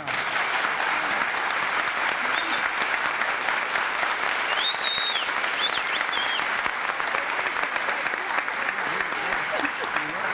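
Studio audience applauding, starting suddenly and holding steady throughout.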